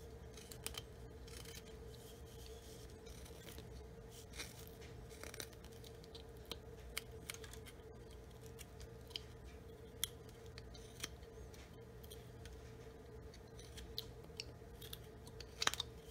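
A Flexcut detail knife slicing and prying small chips from a block of basswood: faint, scattered short cuts and scrapes. A steady low hum runs underneath.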